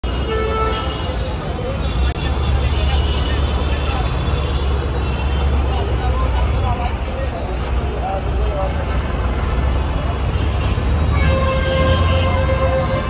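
Busy street traffic with a steady low rumble of engines, a short vehicle horn near the start and a long horn held from about eleven seconds in, over indistinct background voices.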